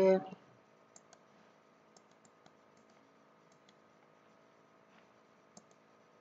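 Faint, scattered clicks at a computer, about a dozen, singly and in quick pairs, over a low steady hum.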